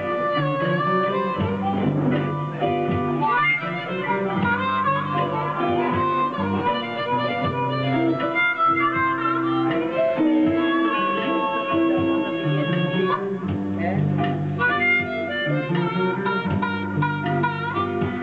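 Blues harmonica solo played through a microphone: held and bent reedy notes over a steady, repeating low accompaniment.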